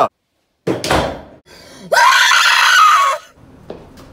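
A door slams shut with a sudden thump a little under a second in, then a man lets out a long, loud scream lasting just over a second.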